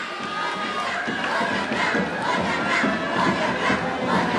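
Many children's voices singing and chanting together as a chorus, over a large crowd's cheering and chatter.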